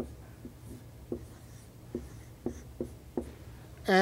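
Chalk writing on a blackboard as an equation is written out: a string of about ten short, sharp taps and strokes at an uneven pace, over a faint low room hum.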